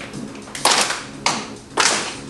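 Hand claps in a steady rhythm, about one every 0.6 seconds, each with a short room echo.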